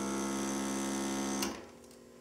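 Maxim windshield repair machine's vacuum pump running with a steady electric hum, drawing a dry vacuum on the repair injector; it cuts off with a click about one and a half seconds in.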